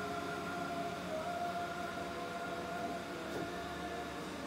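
Electric blower fans of inflatable Christmas decorations running: a steady hum with several held whining tones.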